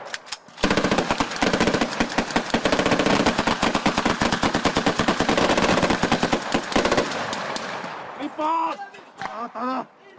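Several rifles firing fast, overlapping volleys of shots for about six seconds, then stopping. Short shouts follow near the end.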